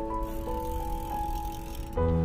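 Slow, soft piano music: single held notes and gentle chords changing about every half second.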